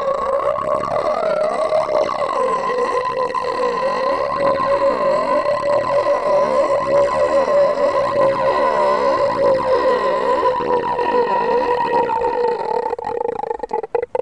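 A long, electronically processed drone, held at one steady pitch, with an even sweeping whoosh laid over it by a phaser-like effect. It breaks up and stutters near the end, then cuts out.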